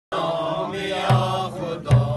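A group of men singing a Wakhi welcome song together in a chant-like unison, with two beats of a frame drum (daf), about a second in and near the end.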